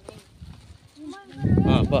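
Voices of women and children talking, after a quiet first second with a single click at the start. From about a second and a half in, a loud low rumble runs under the voices.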